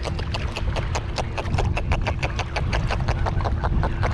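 A small jack (jurel) held out of the water close to the microphone, making a rapid, steady train of clicks.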